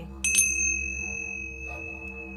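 Tingsha cymbals struck together, a quick double clink about a quarter-second in, then a high, clear ring that slowly fades. A low, steady musical drone runs underneath.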